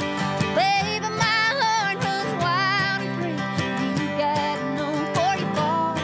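A woman singing a country song with a wavering vibrato on held notes, accompanied by two strummed acoustic guitars.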